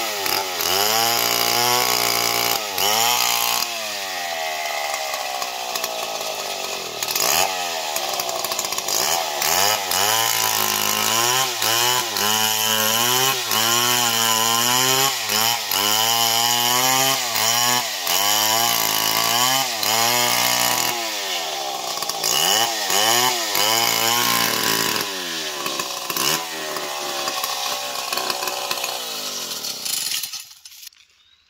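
Stihl MS 070 two-stroke chainsaw ripping lengthwise through a jackfruit log. The engine pitch dips under load and climbs again, over and over, about once a second, with the chain's cutting noise over it.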